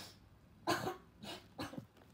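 Three short, breathy vocal bursts from a boy, each a fraction of a second long and about half a second apart, with no words.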